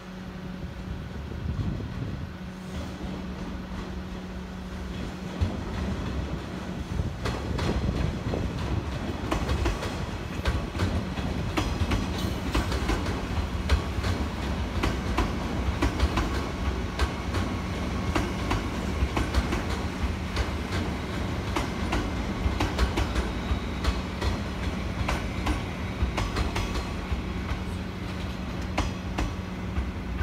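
A JR West 201 series electric commuter train passing on the tracks, its wheels clicking repeatedly over rail joints and points. The sound builds about six seconds in and eases off near the end.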